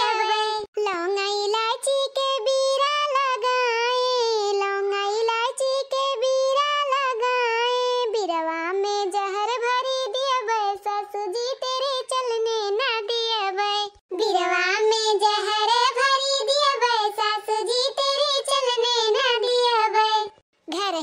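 A high-pitched cartoon-character voice sings a melodic folk-style song with a wavering pitch, with no accompaniment. There is a brief pause about fourteen seconds in.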